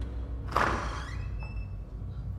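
A door opening with a knock about half a second in, followed by a brief thin rising squeak, over a low steady drone.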